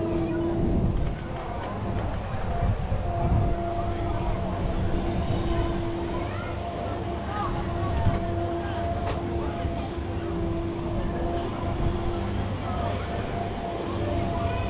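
Spinning balloon-gondola amusement ride running: a steady machine hum that drops out and comes back, over a low rumble, with people's voices in the background.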